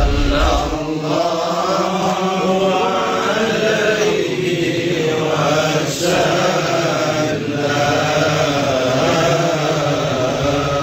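Voices chanting a sustained, melodic chant with hardly a break.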